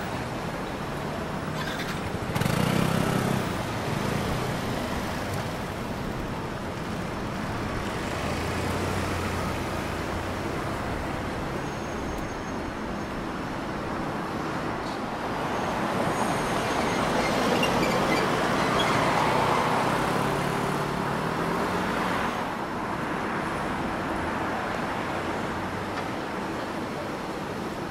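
Road traffic on a city street: car and motorbike engines and tyre noise passing steadily. One vehicle passes loudly about two to three seconds in, and a longer, louder swell of passing traffic comes around the middle of the latter half.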